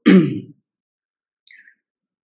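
A man clearing his throat once, a short sound of about half a second, with a faint brief tick about a second and a half in.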